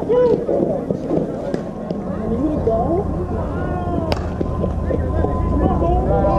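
Indistinct chatter of several people talking and calling at once around a softball field, over a low wind rumble on the microphone. A single sharp crack comes about four seconds in.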